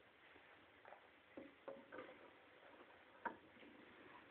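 Faint, irregular clicks and crackles, about half a dozen, the loudest a little past three seconds in, from a snake shifting on the loose bedding of its terrarium as it feeds.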